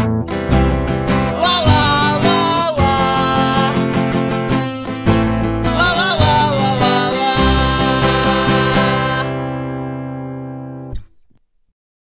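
Acoustic guitar strumming the closing chords of a solo folk-punk song; the last chord rings out and fades, then stops suddenly about eleven seconds in.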